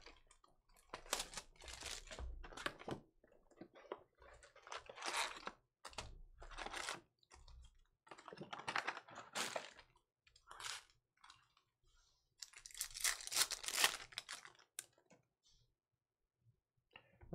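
A trading card hobby box having its plastic wrap torn off and its foil packs ripped open, in a run of irregular crinkling and tearing bursts, the longest near the end.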